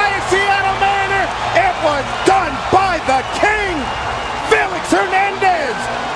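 Ballpark crowd cheering after a perfect game's final out, with many voices yelling and whooping in rising-and-falling shouts over the roar. A few sharp smacks cut through.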